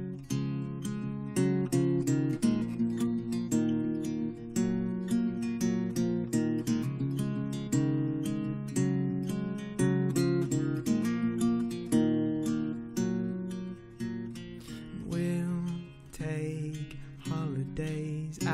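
Cort acoustic guitar playing an instrumental passage of picked and strummed chords in a steady flow, dipping quieter about fifteen seconds in.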